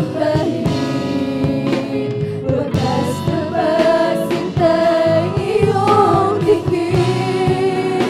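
A group of women singing a Tagalog worship song together, backed by a live band with electric bass and a steady beat.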